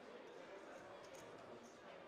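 Near-silent poker room ambience: faint background chatter, with a few light, sharp clicks.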